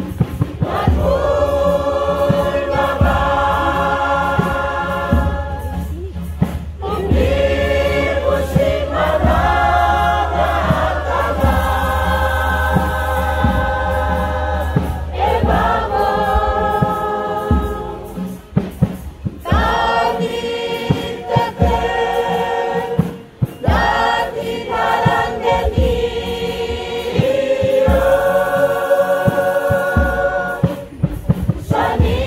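A choir of village women and men singing a traditional Kei song together, in long held phrases with short breaths between them. A low steady hum lies under the singing and stops about halfway through.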